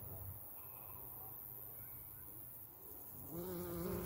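A bee flying close by, buzzing loudly for about a second near the end with a wavering pitch as it passes. A faint steady high hiss runs underneath.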